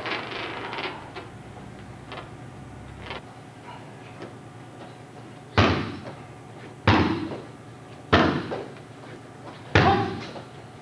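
Kicks landing on a hanging heavy punching bag: four loud smacks about a second and a half apart, starting about halfway through.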